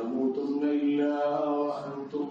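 A man's voice chanting Arabic in a Quranic recitation style, drawing out long, held melodic notes.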